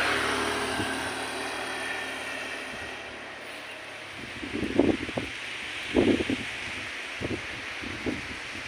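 Outdoor background noise: a steady rushing sound that fades over the first few seconds, then four short muffled bumps in the second half.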